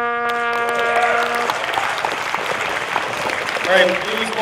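Trumpet holding one long note that stops about a second and a half in, followed by a crowd applauding.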